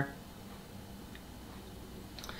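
Quiet room tone with a faint steady hum, and one tiny tick about a second in.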